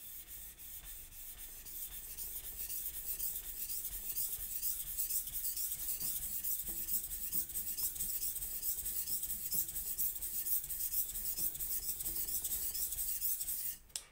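Single-bevel steel kitchen knife being stroked back and forth on a soaked whetstone, a rhythmic wet scraping with each stroke, growing louder after about two seconds. Only the bevelled right side is being ground, working the steel over into a burr on the flat side.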